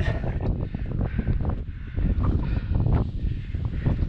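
Strong wind buffeting the microphone: a dense, rumbling noise that rises and falls with the gusts.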